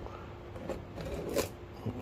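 Clear plastic packing tape crinkling and crackling as it is peeled off a cardboard box, with a few short sharp crackles, the loudest about one and a half seconds in.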